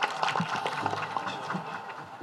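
Audience clapping: a dense patter of hand claps, dying away toward the end.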